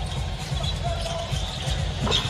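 Basketball being dribbled on a hardwood court, with arena background music playing under it.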